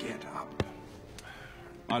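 A soft breathy rustle of movement, then one sharp knock on the stone floor about half a second in, with a fainter tap a little later; a man's voice begins right at the end.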